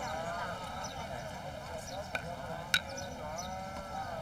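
Indistinct background voices of a street crowd murmuring, with a single sharp click a little past the middle.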